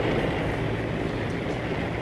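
Steady, unchanging drone of B-24 Liberator bombers' radial engines running on the airfield, heard through the hiss of an old film soundtrack.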